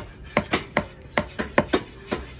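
Heavy broad-bladed knife chopping tuna flesh into cubes on a round wooden chopping block: about eight quick, uneven strikes of the blade through the fish into the wood.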